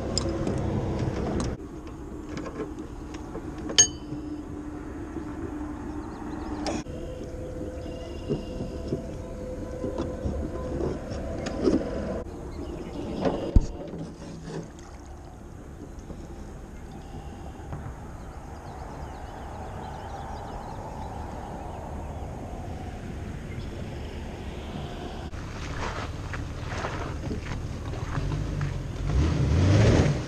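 Boat launch handling sounds: sharp metal clicks and knocks from unhooking a jon boat from its trailer winch, over the low running of a vehicle at the ramp. The low engine rumble grows louder near the end as the tow vehicle pulls the trailer away.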